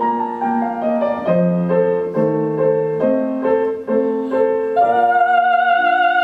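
Streif grand piano playing a short solo passage of an aria accompaniment, a string of separate notes. Near the end a soprano voice comes back in on a long, sustained note with vibrato over the piano.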